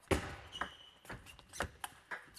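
Table tennis rally: the plastic ball clicks sharply off the rubber-faced rackets and bounces on the tabletop in a quick, uneven series of ticks.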